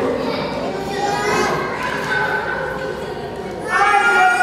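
A child speaking.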